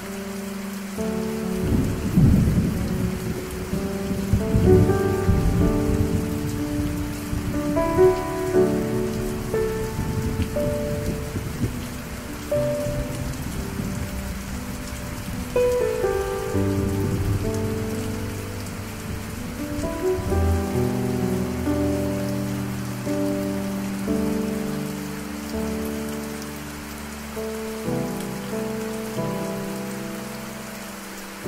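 Steady rain with a long rumble of thunder, loudest about two seconds in and dying away about two-thirds of the way through, under piano music.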